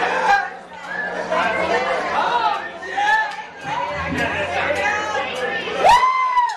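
Indistinct chatter of several voices over a steady low hum. Near the end a loud pitched tone glides up and holds.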